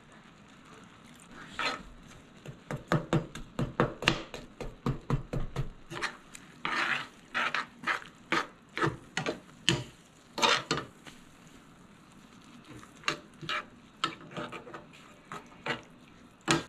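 Metal spoon stirring thick oatmeal in a cast iron skillet, scraping and clinking against the pan in quick, irregular strokes, with a short pause about two thirds of the way through.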